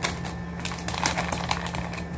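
Plastic face-mask packets crinkling and rustling as they are handled, in irregular crackles, over a steady low hum.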